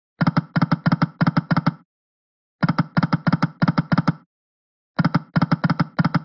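Reel-spin sound of the EGT Shining Crown video slot: three spins, each a run of rapid clicks, about six a second for about a second and a half, with short silences between spins.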